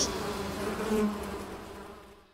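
Buzzing of bees as a cartoon sound effect, fading away over about two seconds.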